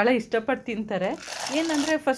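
A person speaking, with a short rustling noise under the voice in the second half.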